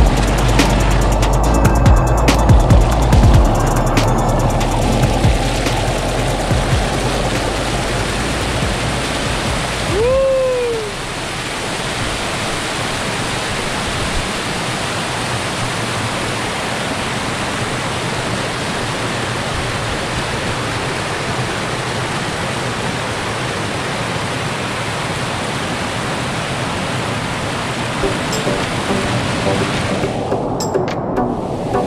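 Background music over the first ten seconds or so, giving way to the steady rush of white water cascading over rocks in a small waterfall. A short sliding tone is heard about ten seconds in.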